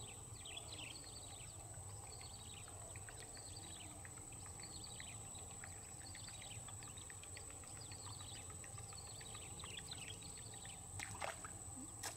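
A bird calling over and over in short descending chirps, about once a second, over a steady high-pitched whine and a low rumble of outdoor background noise. A brief click comes near the end.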